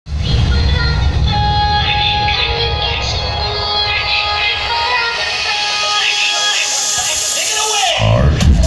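Loud dance music with vocals played over a DJ sound system. The bass drops away in the second half and a falling sweep comes near the end, a build-down before the beat returns.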